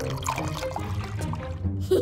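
Cartoon sound effect of liquid slime pouring from two glass flasks into a cauldron, over background music.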